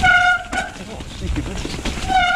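Mountain bike disc brakes squealing on wet rotors: a steady high-pitched squeal with overtones in two short bursts near the start, over low rumble from the tyres on the trail.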